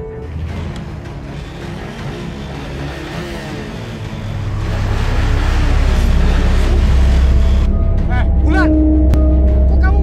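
Motorcycle engine, its pitch gliding as it comes up and slows, then idling with a steady low rumble from about halfway in.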